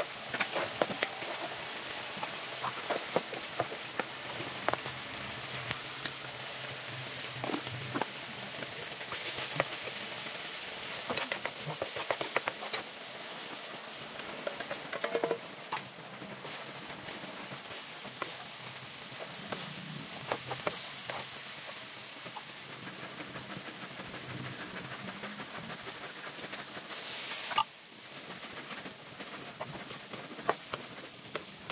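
Eggplant and corned beef frying in a steel wok on a gas burner: a steady sizzle with frequent clicks and scrapes of a spatula stirring against the metal pan. Just before the end, a louder burst of hissing cuts off suddenly.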